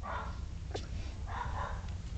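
Three-week-old Shetland sheepdog puppies wrestling, giving a few faint, short puppy vocalizations over a steady low hum, with one sharp click about three-quarters of a second in.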